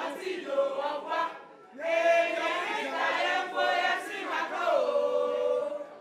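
Several voices singing a song in two phrases: a short one, then a longer one that slides down into a long held note near the end.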